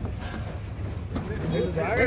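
Voices talking close to the microphone, getting louder near the end, over a steady low rumble.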